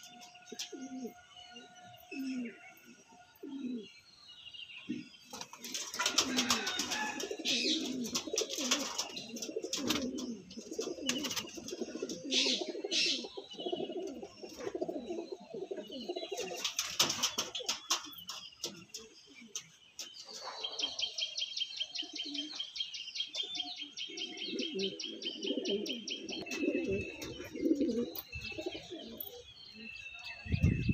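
Andhra pigeons (domestic pigeons) cooing again and again, several birds overlapping. From about two-thirds of the way in, a fast, even high chirping runs over the cooing.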